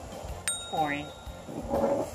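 Baby Alive doll's electronic sound unit responding to its heart button being pressed: a sudden electronic chime about half a second in, followed by a short voice-like sound that rises and falls in pitch.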